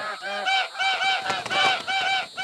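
Several geese honking: a rapid, overlapping run of short calls, about four a second, as the flock takes flight.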